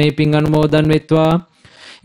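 A man reading aloud in Sinhala into a microphone in a steady, level intonation, breaking off about a second and a half in; a short, soft rustling noise fills the pause until he goes on.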